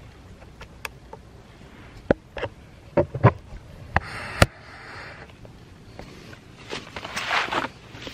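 Handling noise from a handheld camera being moved about: scattered sharp clicks and knocks in the first half, then two short stretches of rustling, the louder one near the end.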